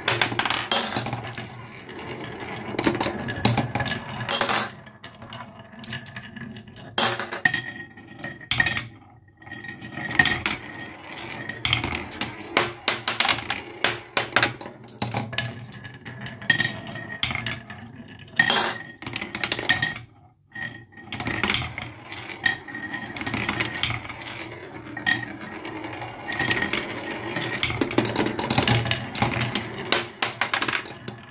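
Glass marbles rolling and knocking their way down a wooden marble run: a steady stream of clicks, clinks and rattles, with two brief lulls, about a third of the way in and about two-thirds of the way through.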